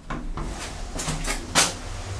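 A Dralle passenger lift's sliding doors closing after a floor button is pressed: a series of short clunks and rattles, the loudest about one and a half seconds in.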